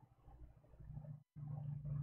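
Near silence in a pause between words, then a faint steady low hum comes in a little past halfway, after a brief total dropout.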